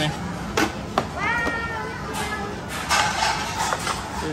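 A few sharp knocks and clinks of plastic serving dishes and their lids being handled on a tabletop, over a constant murmur of voices.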